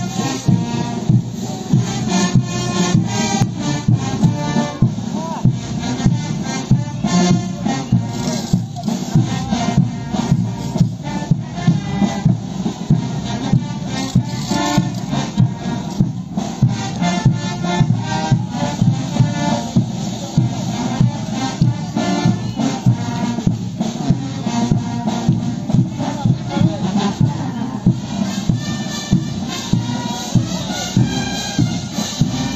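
Bolivian folk dance band music with a steady, heavy beat.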